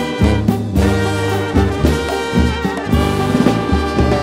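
A Mexican banda's brass section, trumpets and trombones, playing loud held chords in an instrumental introduction, over a pulsing tuba bass and drums.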